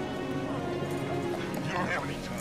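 Film soundtrack playing: a sustained music score, with voices coming in near the end.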